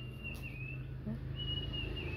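A faint high, steady whistling tone sounds twice, once near the start and again in the second half, over a steady low hum.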